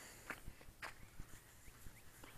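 Faint, irregular footsteps with a few light knocks, about five or six short taps over two seconds.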